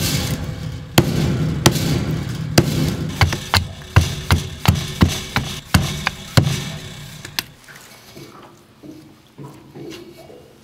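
A knife being batoned with a wooden stick down through a small log to split kindling: a string of about fourteen sharp wooden knocks, coming faster in the middle, that stops about seven and a half seconds in.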